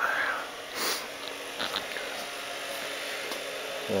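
A person sniffing once, about a second in, over a faint steady hum, with a few light clicks of handling.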